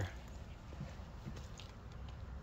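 Quiet background: a faint steady low rumble with two soft taps about a second in.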